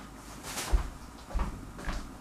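A few soft, dull knocks and a light click: small handling sounds against a counter.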